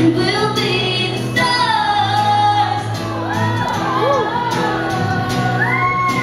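Young female pop singer singing live through a microphone and PA over musical accompaniment, with quick rising-and-falling vocal runs in the middle and near the end.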